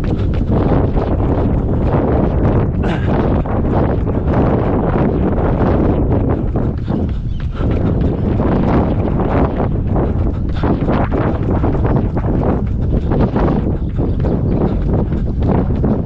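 A runner's footsteps in a quick steady rhythm on a path, under wind buffeting the body-worn camera's microphone.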